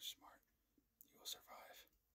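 A man whispering close to the microphone in two short breathy phrases, the second starting about a second in.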